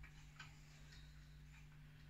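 Near silence: room tone with a low steady hum and two faint ticks, about half a second and a second in.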